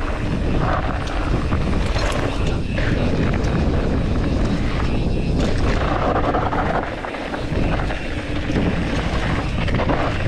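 Wind buffeting a GoPro's microphone over the steady rumble of a Norco Sight A1 full-suspension mountain bike's tyres rolling down a dirt trail, with scattered clicks and rattles from the bike.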